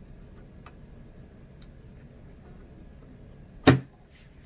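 Hands working a fabric mask into place at a sewing machine, with a few faint ticks, then a single sharp clack near the end. The machine is not yet sewing.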